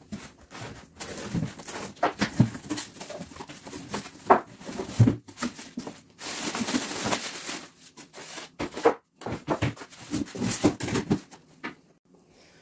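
Unboxing sounds: a cardboard box and its packing being handled, with knocks and scrapes, and a plastic bag crinkling as a wooden cabinet heater is pulled out of it, with a longer rustle about six seconds in.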